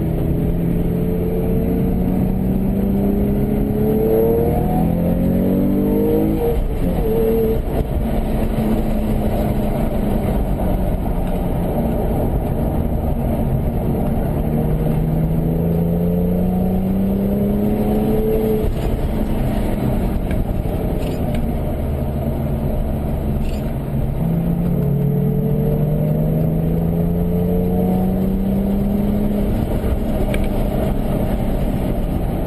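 Porsche engine heard from inside the cabin at an easy parade-lap pace, its note climbing steadily under acceleration, dropping back and climbing again several times, over a steady rumble of road noise.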